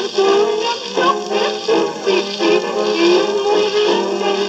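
Period jazz band recording playing from a shellac 78 rpm record on a turntable, with a melody line carried over a steady accompaniment.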